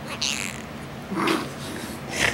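A cat's hoarse, breathy meows with hardly any voice, twice, the second about a second in: the raspy "sick meow".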